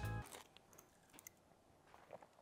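Background music cuts off at the start, then near silence with a few faint clicks of someone eating.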